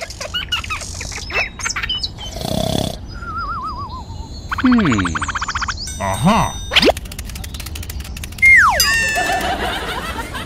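A run of cartoon sound effects over light background music: a boing, a wavering wobble tone, then falling and rising whistle glides, one after another.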